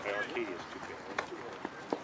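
Faint, indistinct voices of people talking in the background, with a few light clicks a little after the middle and near the end.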